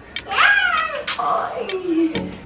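An infant's long vocal cry that rises sharply in pitch and then slides slowly down over about a second and a half.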